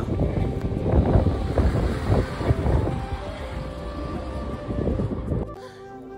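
Wind buffeting the microphone: a rough low rumble in uneven gusts, cutting off suddenly about five and a half seconds in.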